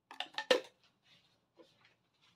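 A few light clicks of a metal spoon against a stainless steel pot after salt is tipped in, the sharpest about half a second in, then only faint small ticks.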